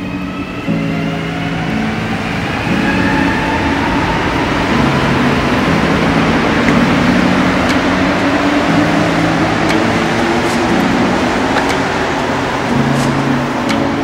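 Rubber-tyred Montreal Metro train pulling out of a station: a rising motor whine as it accelerates during the first few seconds, then the rumble of the cars running past, loudest in the middle. Background music with a repeating low melody plays throughout.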